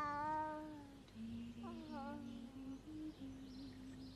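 A baby fussing: two short, falling cries, the first and loudest at the start and a weaker one about a second and a half in, over a low wavering hum.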